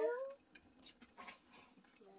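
A child's drawn-out voice trailing off, then a quiet room with a few faint rustles and clicks.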